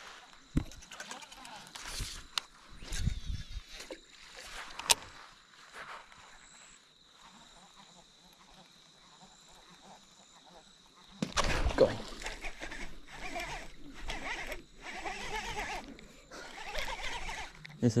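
Scattered clicks and knocks of a baitcasting reel and fishing gear being handled. About eleven seconds in, loud rustling and knocks as the camera itself is handled and moved.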